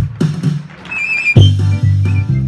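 A Basque txirula, a small three-hole flute, plays a high melody over a ttun-ttun string drum struck rhythmically with a stick, giving low droning notes. About a second in there is a brief lull with one held flute note, then the full tune comes in strongly.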